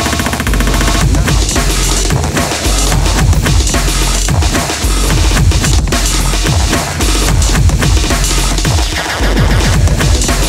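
Breakcore music: fast, dense chopped breakbeat drums with machine-gun snare rolls over heavy sub-bass, the bass notes repeatedly dropping quickly in pitch. A very rapid stuttered roll opens the passage.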